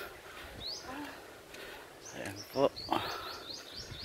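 Two short, loud vocal calls about two and a half seconds in, then a quick run of high, rising chirps near the end, over faint outdoor background.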